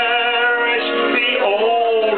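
A man singing a hymn, holding one long note and then moving on to a new phrase about a second in.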